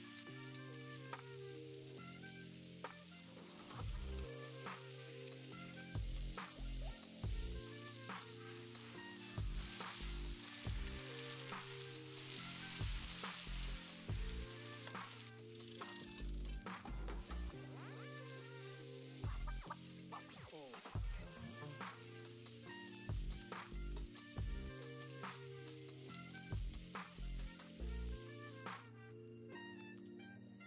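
Broccoli florets frying in oil and spice masala in a nonstick pan: a steady sizzle with scattered clicks and scrapes of stirring. Background music with a steady beat plays underneath.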